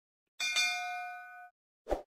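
Notification-bell sound effect: a bright bell ding, struck twice in quick succession, that rings for about a second and stops. A short, dull pop follows near the end.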